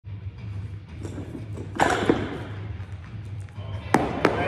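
Barbell snatch with bumper plates: a loud, sudden burst about two seconds in as the bar is pulled, and a sharp knock near the end as the lifter lands in the catch, over a steady low hum.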